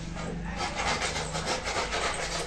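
Wood being rubbed by hand in quick, even back-and-forth strokes, about six a second, as when a wooden box is sanded or rubbed down for polishing.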